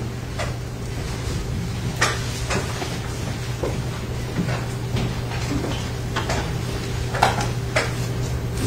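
Room tone with a steady electrical hum and scattered light knocks and clunks, the sharpest about two seconds in and again about seven seconds in.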